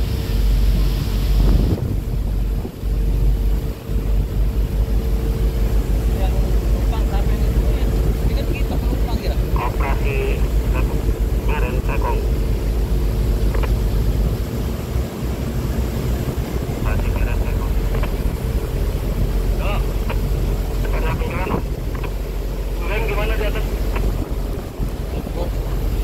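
Tugboat engine running steadily with a constant hum, mixed with heavy wind buffeting on the microphone.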